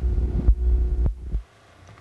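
Loud low rumble on the camcorder microphone lasting about a second and a half, with a sharp click near its end, then it cuts off suddenly; handling noise from the camera being moved.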